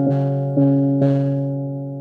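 Portable electronic keyboard playing: three chords struck about half a second apart, the last one held and fading away.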